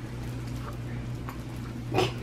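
A steady low hum of room noise with a few faint light taps, then a sharp knock right at the end.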